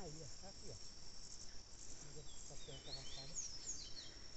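Insects chirring steadily at a high pitch, faint, with a few short high gliding chirps in the second half.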